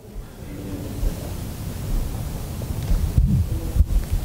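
Clothing rustling against a clip-on microphone as the wearer moves, a steady rushing noise with low thumps near the end.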